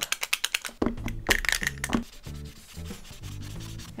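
Krink K-75 paint marker's tip rubbing over sketchbook paper in rapid back-and-forth strokes, a scratchy scrubbing that stops about halfway through.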